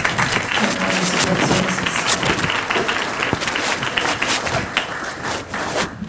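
Audience applauding, dying away near the end.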